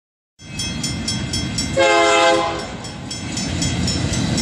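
Approaching freight train led by three EMD SD70M diesel locomotives: low engine rumble under a bell ringing about four strikes a second. One short horn blast sounds a little under two seconds in.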